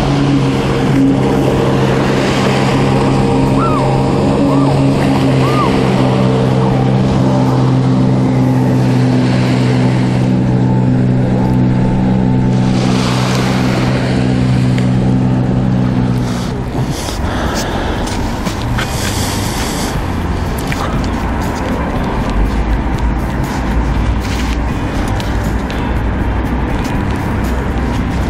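Jet ski engines droning at steady speed on the sea, an even, unchanging hum that stops abruptly about two-thirds of the way through. It gives way to a noisier wash with scattered light clicks.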